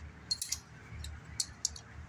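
A handful of light, short metallic clicks and clinks from small metal parts being handled, such as starter mounting bolts knocking together in the hand.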